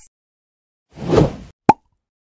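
Editing sound effects for a title-card change: a short whoosh that swells and fades about a second in, then a single quick pop.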